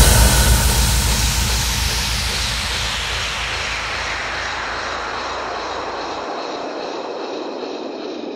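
A falling white-noise sweep in a hardstyle mix transition: a jet-like whoosh that slowly fades over several seconds. Beneath it, a low bass rumble dies away about six seconds in.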